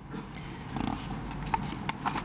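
Rustling and handling noise picked up by a podium microphone, with a few sharp clicks in the second half.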